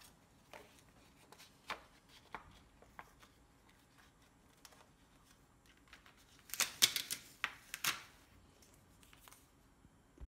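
Light handling noise on a workbench: a few scattered small clicks and taps, then, about six and a half seconds in, a second or so of crisp crinkling as a backing sheet of adhesive foam pads is picked up and moved.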